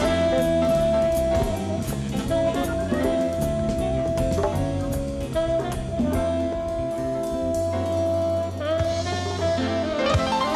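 Jazz played on tenor saxophone, with keyboard and drum kit behind it. The saxophone holds long notes, one to two seconds each, over a steady drum beat.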